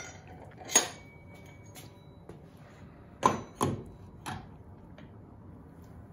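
Metal parts of a drum carder's bump winder being handled and set in place by hand, giving a few sharp clanks and knocks: one just under a second in, two close together a little after three seconds, and a fainter one after four seconds.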